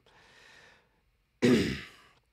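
A man's single loud cough about a second and a half in, after a faint breath: he is coughing to clear something that went down the wrong pipe.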